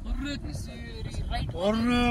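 A person's voice in short, drawn-out, held notes, like singing or calling, with the longest note near the end.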